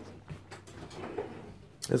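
Faint knocks and clicks of objects being handled, under faint low speech.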